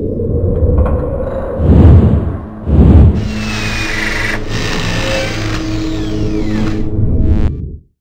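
Logo-sting sound design: a deep rumble with two heavy booms about a second apart, then a sustained rumbling drone with faint high sweeps. It cuts off abruptly just before the end.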